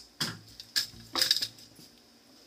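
Three sharp, light metallic clinks, the loudest a little past one second in.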